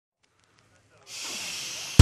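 Silence, then about a second in a steady high hiss starts: a noise sound in the opening of a blues-soul song's intro. It cuts off as the full band comes in.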